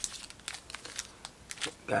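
Foil wrapper of a Panini Prizm basketball card pack being crinkled and torn open by hand: a scatter of small, quick crackles and rips.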